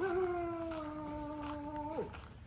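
A long drawn-out animal call, held for about two seconds on one slowly sinking pitch, ending with a brief upward flick.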